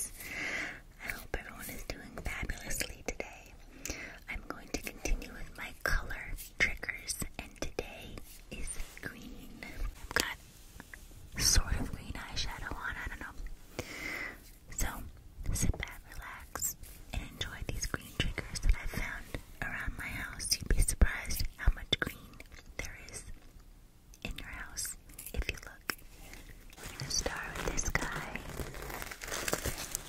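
Close-up whispering into a foam-covered microphone, with many soft, sharp mouth clicks between the words.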